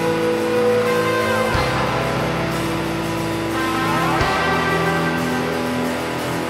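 Live rock band playing, electric guitars holding long sustained chords. The chords change about a second and a half in and again about four seconds in, each change marked by a short hit.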